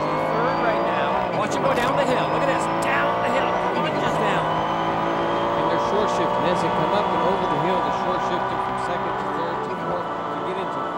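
Racing car engine heard from inside the cockpit at speed, a steady high-pitched drone with many tones, dipping briefly about four seconds in and easing slightly lower in pitch toward the end.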